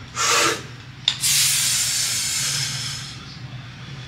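A lifter's breathing during a deadlift pull: a short sharp breath in, then a long hissing breath out for about two seconds as he drives the barbell up from the floor, the bracing breath pattern of the lift.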